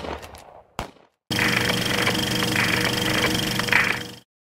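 Outro sound effect with music: after a fading hit and a brief gap, a loud, fast rattle like machine-gun fire with steady tones over it starts about a second in. It runs for about three seconds and cuts off suddenly at the end.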